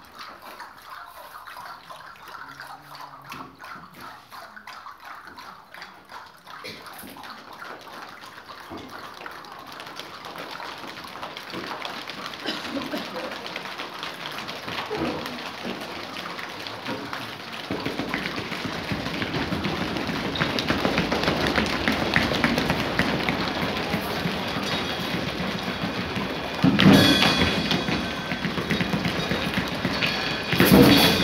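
Improvised imitation of rain: a dense patter of many small taps and clicks that builds slowly from soft to loud, with sudden heavy thumps near the end.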